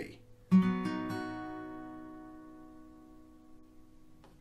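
Acoustic guitar strummed on a B major chord played on the four thinnest strings (first finger on the first string at the second fret, three fingers across the second to fourth strings at the fourth fret). It is struck about half a second in, touched again just before a second in, then left to ring, dying away slowly.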